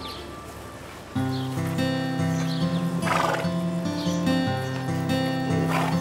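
Background music whose steady bass notes come in about a second in, with a horse whinnying twice over it, about halfway through and again near the end.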